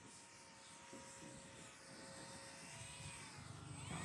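The electric motor and propeller of an E-Flite Extra 300 RC aerobatic plane give a faint steady whine as it flies past low. The whine grows louder as the plane comes closer toward the end.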